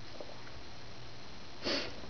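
A single short sniff near the end, over a steady low hiss.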